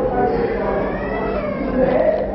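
A man's voice delivering stylized stage dialogue, drawn out with the pitch sliding up and down, from a performer in a Yakshagana play.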